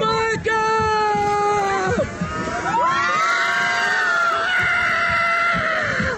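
A person screaming on an upside-down fairground ride: two long held screams, the first lasting about two seconds, the second rising and then falling away near the end.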